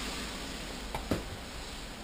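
Two light knocks about a second in, from tools being handled, over a faint steady hiss.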